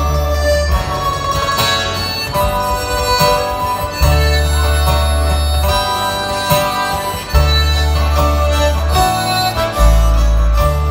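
Instrumental break of a live folk ballad: a harmonica carries the melody over guitars, button accordion and deep held bass notes that change every second or two.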